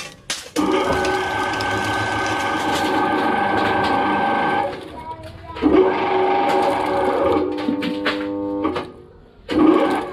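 Twin-shaft shredder tearing and crushing aluminium cans: loud metal grinding with a steady pitched squeal from the metal, in two long stretches broken by a short lull about five seconds in and another near nine seconds, then a burst again at the end.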